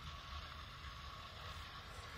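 Faint, steady outdoor background noise: a low hum with a light hiss and no distinct events.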